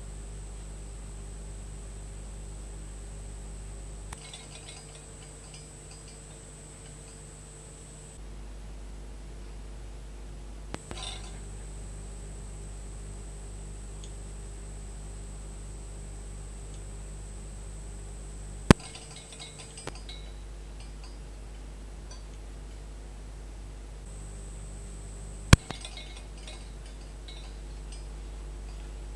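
Small pings from the vacuum fluorescent display tubes of an Elektronika 13 clock, which the owner puts down to the filaments heating when the tubes are energised: four sharp pings several seconds apart, the last two much louder, each trailing faint ticking. Under them run a steady low hum and a thin high whine.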